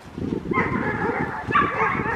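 Small dog yapping: two short, excited yips about half a second and a second and a half in, over a steady low rumble.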